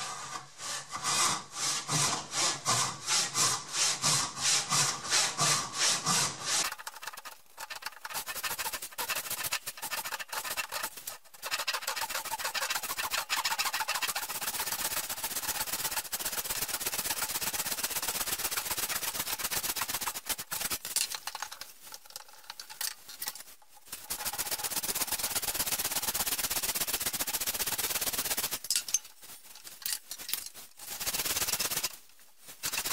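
Backsaw ripping tenon cheeks down the end grain of a hardwood stretcher held in a vise, with even push-and-pull strokes at about two a second at first. Later the strokes run quicker and closer together, with a break of a couple of seconds about two-thirds of the way through before the cut resumes and stops near the end.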